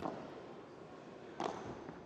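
Faint, steady arena background with a single sharp knock of a padel ball about one and a half seconds in, as the rally goes on.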